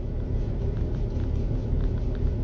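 Steady low rumble inside a car cabin, with a few faint light ticks.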